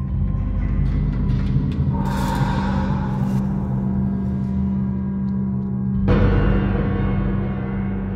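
Eerie background music: a steady low drone with two gong-like swells, one about two seconds in and another about six seconds in.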